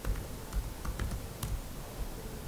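Laptop keyboard being typed on: several light keystroke clicks at an irregular pace.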